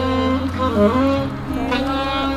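Live saxophone playing a slow, legato love-song melody over a backing track with held bass notes.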